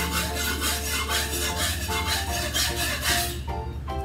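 Background music, over a small handheld razor scraping stubble on the cheek in quick short strokes; the scraping stops about three and a half seconds in.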